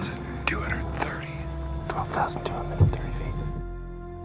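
A man speaking in a whisper over background music, with a thump about three seconds in.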